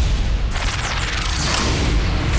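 Cartoon power-up sound effect as a power coin is raised: a loud rumbling whoosh that starts suddenly and holds steady.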